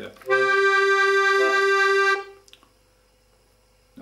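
Piano accordion playing a short phrase: a note held for about two seconds over a brief low bass at its start, then stopping.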